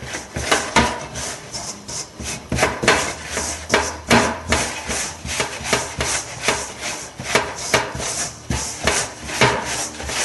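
Hand mixing wholemeal flour and water into dough in a glass bowl: an irregular run of short knocks and scrapes, several a second, as the fingers work the dough against the bowl.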